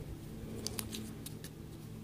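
Faint light clicks of a steel dental pick tapping and scraping against a small foam keyboard pad on a wooden tabletop, a quick cluster of about half a dozen ticks between half a second and a second in, over a low steady hum.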